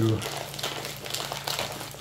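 Trading-card pack wrappers crinkling as they are handled and rummaged through, an irregular run of small crackles.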